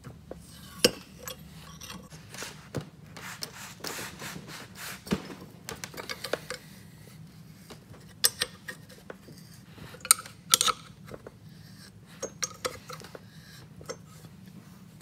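A 13 mm box-end wrench clinking and scraping on the bolts of a rusty HX35 turbine housing as they are worked loose by hand without a hammer: scattered light metal clicks and scrapes with a few sharper clinks.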